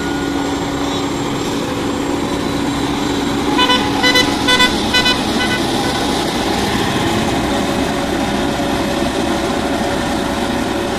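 Diesel engines of an asphalt paver and the tipper truck feeding it running steadily, with a vehicle horn giving a quick series of about five short toots in the middle.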